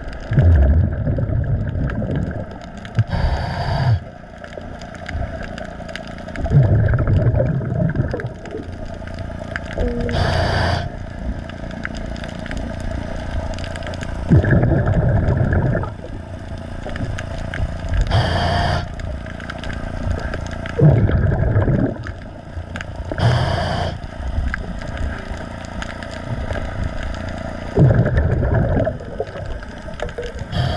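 Scuba diver's regulator breathing underwater, recorded close: short hissing inhalations alternate with low rumbling bubble exhalations every few seconds. A faint scraping of hull cleaning runs under the breathing.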